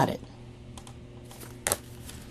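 Tarot cards being handled and set down: a few faint clicks, then one sharp tap near the end.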